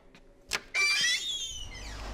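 A sharp click, then a loud, wavering high squeak lasting under a second as a glass shop door is pushed open; a low steady rumble follows.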